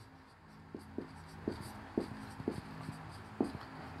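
Marker pen writing on a whiteboard: a run of faint short strokes and taps as the letters are drawn.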